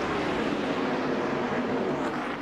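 NASCAR stock car's V8 engine at full speed on broadcast track sound, a dense engine noise whose pitch slowly falls.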